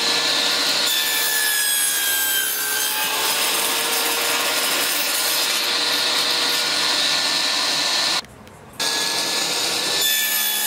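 Circular saw running at full speed with a steady whine, its blade cutting across plywood on a cross-cut jig. The sound drops out for about half a second near the end, then picks up again.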